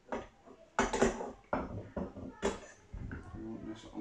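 Handle rods of an artificial-grass vacuum-brush knocking and clinking against the machine's frame as they are slotted into place, in a handful of sharp knocks.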